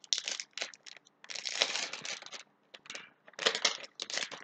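Foil trading-card booster pack wrapper crinkling as it is torn open and crumpled by hand, in irregular bursts, the longest lasting about a second.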